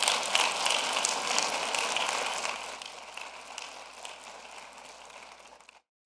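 Audience applauding, starting loud and growing steadily fainter until it fades out just before the end.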